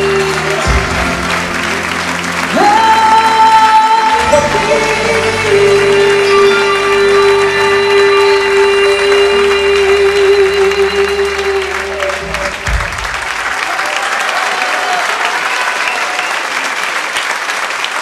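Live band and female singer ending a ballad: she holds long final notes, jumping up to a high one about two and a half seconds in, over the band's sustained closing chord, which stops about two-thirds of the way through. Audience applause follows.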